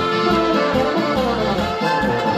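Live Oberkrainer folk band playing a polka-style tune: accordion, clarinet, trumpet and guitar over a low brass bass and drums, with a steady pulsing bass line.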